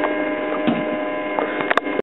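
Steady electric hum of a small water pump running for a finishing sluice, with a few light knocks and one sharp click near the end as the hose fitting is handled.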